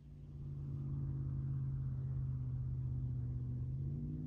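A motor running steadily, a low even hum with a few overtones that fades in over about the first second and shifts slightly in pitch near the end.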